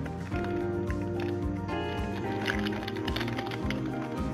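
Background music with a steady beat and held notes.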